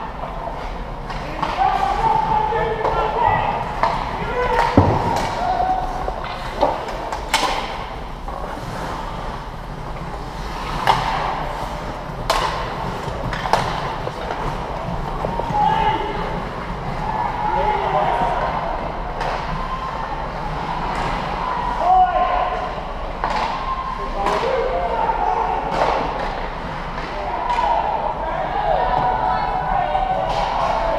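Ice hockey game sounds: spectators' voices talking and calling out throughout, with sharp knocks of puck and sticks against the boards every few seconds, the clearest about 7 and 12 seconds in.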